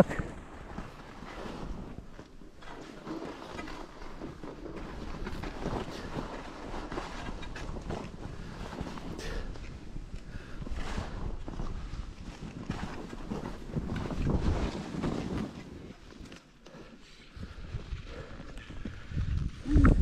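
Skis sliding and turning through snow, with wind rushing over the microphone; the noise swells and fades with the turns, loudest about fourteen seconds in and dropping away briefly a couple of seconds later.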